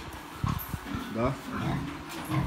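Domestic pigs grunting in a barn, with a cluster of low grunts about half a second in.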